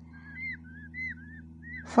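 Newly hatched peafowl chicks peeping: a run of short, high peeps, each rising and falling, about three or four a second.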